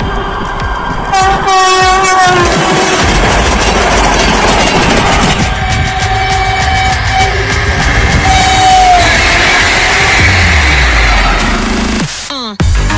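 Electric passenger train sounding its horn three times over the rumble of the train running on the track: a blast about a second in, another around six seconds, and a third near nine seconds that falls in pitch at its end.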